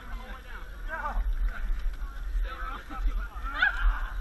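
Several people's voices calling out and shouting, with pitch sliding up and down, over a steady low rumble.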